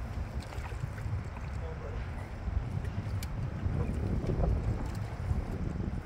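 Low wind rumble on the microphone over water sloshing at a boat's side, with a few short splashes and knocks as a large red drum is hauled up out of the water.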